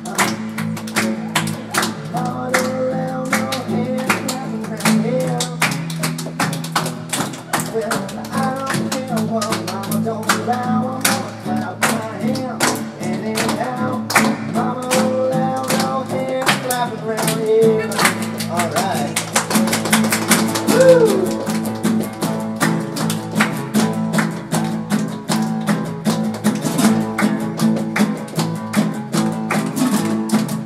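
Two acoustic guitars strummed briskly in a fast, driving rhythm, with a man's voice singing over them in stretches.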